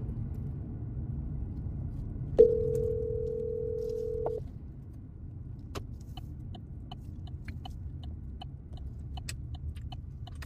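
A phone call's ringback tone, one steady two-second ring about two and a half seconds in, over the low road and engine rumble of a car cabin. From about six seconds on, a light clicking about twice a second, typical of a car's turn signal.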